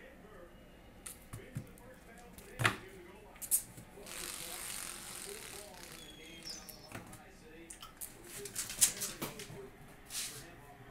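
Scattered light knocks and clicks on a hard floor, with a rustle lasting about two seconds in the middle and a cluster of knocks near the end, as a small toy is tossed and fetched by a kitten.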